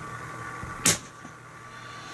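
Braided PE fishing line snapping under a hand-pulled break test at about 10 kg: a single sharp crack about a second in, over a faint steady hum.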